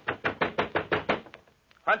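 Rapid knocking on a door, about ten quick knocks in just over a second, then it stops.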